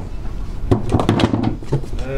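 A few light knocks and handling noise as a KYB Excel-G gas shock absorber is held and moved.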